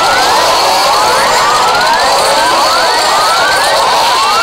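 A loud, dense jumble of several cartoon soundtracks playing over each other, full of overlapping short rising pitch sweeps like whoops or siren glides.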